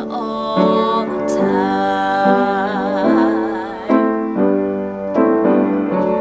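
A woman singing a jazz ballad over piano accompaniment, holding a long note with vibrato through the middle while the piano chords change about once a second.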